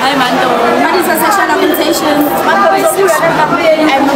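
Only speech: voices talking over one another, with chatter behind them.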